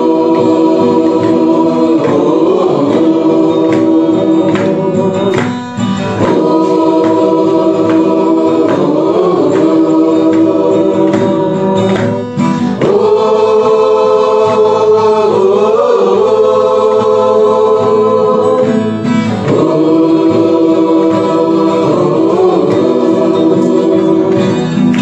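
A choir singing a Christian gospel song in Garo, long held chords in phrases of about six seconds with short breaks between them.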